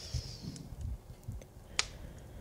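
Slow heartbeat sound effect, soft low thumps in lub-dub pairs, under a crackling fireplace with small ticks and one sharp pop near the end, the loudest sound. A breathy hiss fades out about half a second in.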